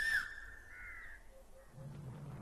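A bird calling twice: a short curved call right at the start and a fainter falling call about a second in, both faint over quiet outdoor background.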